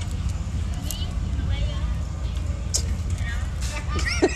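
A motor vehicle's engine running with a steady low rumble, under faint voices.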